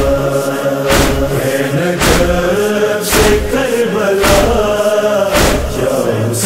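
Male chorus chanting a noha refrain in long, drawn-out voices over a steady beat of about one stroke a second.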